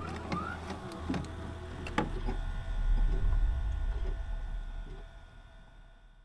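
Glitchy logo-sting sound effect: sharp clicks and static hiss with a short rising whistle less than a second in, then a deep bass rumble that swells about halfway through and fades away near the end.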